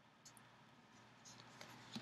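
Faint rustles and light scrapes of a paper greeting card being handled and turned over in the hands, against near silence.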